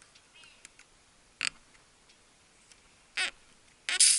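Pliers working a nail out of a car tyre's tread: two short scraping sounds, then just before the end the nail comes free and air starts hissing loudly out of the puncture.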